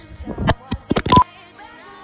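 Phone being handled and swung against clothing: a quick run of knocks and rubbing on the microphone, with a short beep about a second in.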